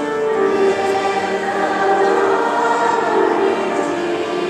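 Children's choir singing a Christmas song in long held notes.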